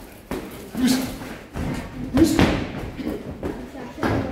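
Gloved punches landing and footwork on the ring canvas during boxing sparring: a few sharp thumps, the loudest a little over two seconds in, in a large echoing gym.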